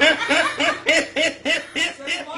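A man laughing in a long run of short, high-pitched 'ha' bursts, about three to four a second, slowly getting quieter.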